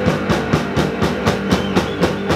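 Live rock band playing an instrumental passage: a drum kit beats steadily at about four hits a second under amplified electric guitars.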